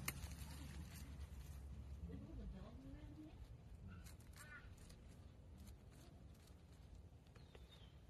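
Near silence: faint outdoor background with a low rumble in the first couple of seconds, a few faint ticks and a brief faint call about four seconds in.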